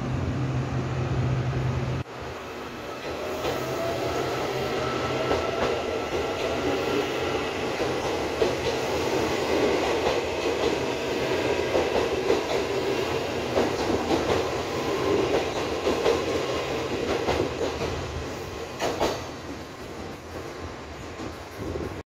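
Taiwan Railways EMU800 electric multiple unit pulling out of the station. A low steady hum cuts off about two seconds in, then a whine rises in pitch as the train accelerates past, with wheels clicking over the rail joints. The sound fades as the train leaves.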